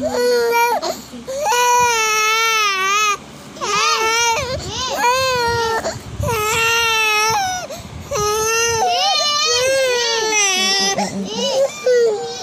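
A three-month-old baby crying in a series of about six long, high-pitched, wavering wails with short gasps between them. The baby is mouthing his fist and is about to be given a bottle, so this is a hungry cry.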